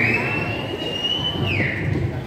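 A long, high whistle from the crowd: it rises, holds a steady pitch for about a second and a half, then drops away, over a low crowd murmur.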